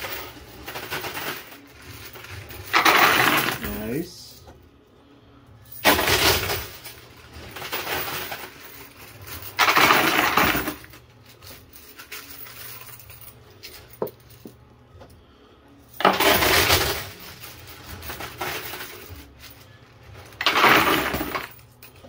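Quarters clattering in a coin pusher arcade machine, in repeated loud bursts about a second long every few seconds as coins spill and slide, with a single sharp click partway through.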